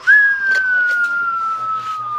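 A person whistling one long, loud note that jumps up at the start, then slides slowly down in pitch and dips away at the end.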